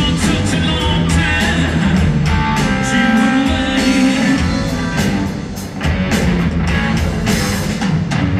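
A live blues-rock band playing in a large arena: electric guitar over bass guitar and a drum kit, heard from the audience with the hall's reverberation.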